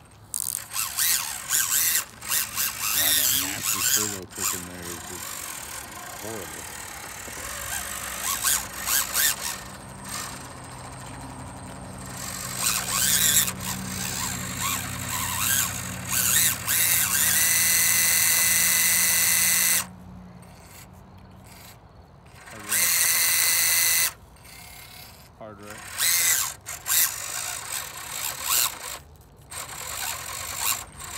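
Axial SCX24 1/24-scale rock crawlers' small electric motors and geared drivetrains whining in stop-and-go bursts as they climb loose dirt and rock, with two longer, louder stretches about two-thirds of the way through.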